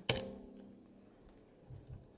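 A sharp knock as a hand bumps the recording phone, followed by a short steady low tone for about a second and a soft thump near the end.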